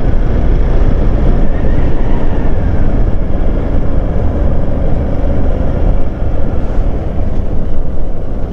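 Hero Xpulse 200 single-cylinder motorcycle riding along at low speed. Engine and road noise carry a steady low rumble, heard from the handlebars.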